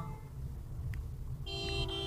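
Steady low rumble of a car's engine and tyres on a gravel road, heard from inside the cabin; about one and a half seconds in, a vehicle horn sounds a steady honk that runs on to the end.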